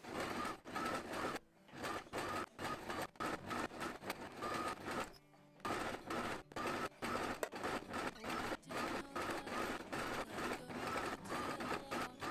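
Electric sewing machine stitching zigzag through braided rope, its needle running in a fast, even chatter. It stops briefly twice, about a second and a half in and again about five seconds in, then carries on.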